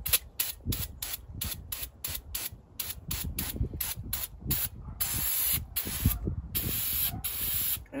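Aerosol can of brake cleaner spraying onto a manual-transmission shift lever to strip off old blackened transmission fluid. The hiss breaks up into rapid spurts several times a second, with a few longer spurts later.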